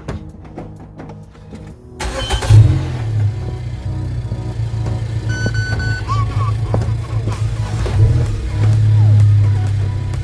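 Suzuki Swift Sport ZC33S's 1.4-litre turbo four-cylinder engine cranks and starts about two seconds in, then settles into a steady idle. A short electronic beep sounds about halfway through, and the revs rise briefly near the end.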